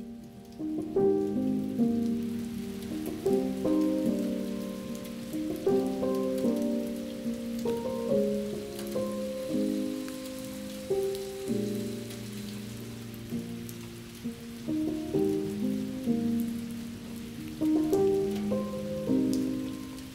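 Steady rain falling, with slow piano music of held notes changing every second or so over it.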